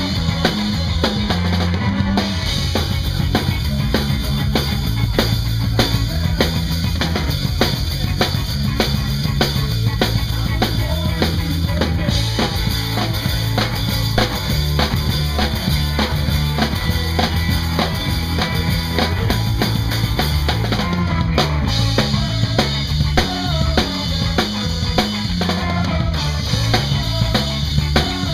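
Live ska-punk band playing a loud, fast instrumental passage with no singing: a full drum kit hitting snare and bass drum in a busy, steady rhythm under electric guitar, bass and trombone.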